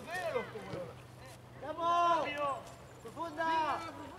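Shouted speech: a man's voice calling a short word, heard as "¿Cómo?", three times in quick succession, typical of rugby players calling a lineout. A faint steady low hum runs underneath during the first three seconds.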